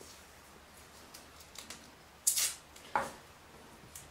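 Painter's tape pulled off its roll: a short ripping sound a little over two seconds in, then a brief sharp snap about a second later.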